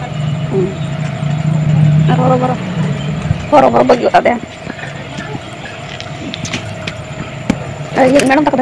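A steady low rumble, strongest in the first couple of seconds, under short spoken phrases from a person's voice about two and three and a half seconds in.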